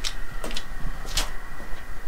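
A few footsteps on a concrete floor, heard as light irregular clicks, over a steady low rumble.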